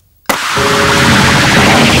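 Science-fiction TV sound effects for a space explosion: a loud, dense hiss with a few held tones beneath it, cutting in suddenly about a quarter-second in and then running on steadily.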